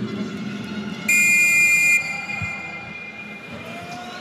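A loud, steady, horn-like blast about a second long, starting and stopping abruptly, over a background of arena crowd noise.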